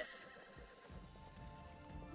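Faint, distant horse neighing over quiet background music, with a low rumble coming in about a second in.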